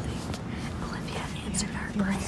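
Quiet whispering voices, with a few soft clicks from the phone being handled.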